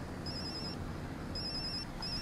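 Mobile phone ringing: a high, trilling electronic ring sounds twice, each ring about half a second long and about a second apart, over a steady low background noise.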